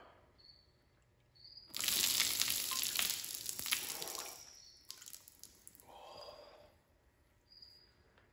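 Coffee poured from a glass carafe over a person's head, splashing onto hair, shirt and floor for about three seconds, starting about two seconds in.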